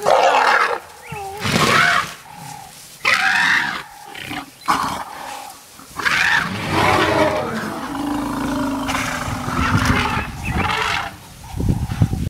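African elephants trumpeting and roaring in a run of loud, separate calls, about half a dozen in the first six seconds, followed by a longer unbroken stretch of calling with a low steady rumble in it.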